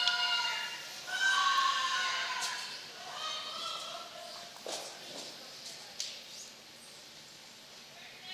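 Curlers shouting long, drawn-out sweeping calls on the ice, three held calls in the first four seconds, followed by a few sharp clicks and quieter arena sound.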